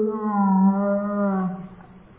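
A woman wailing as she cries: one long, held cry that sinks slightly in pitch and fades out about a second and a half in.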